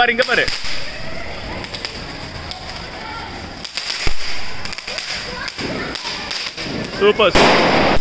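Handheld spark-spraying firework held aloft on a stick, with a steady hiss and scattered crackling pops from it and from ground fireworks. A louder burst of noise comes near the end.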